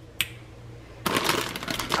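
A single sharp click, then about a second in the crinkling rustle of a plastic bag of broccoli being handled on the counter.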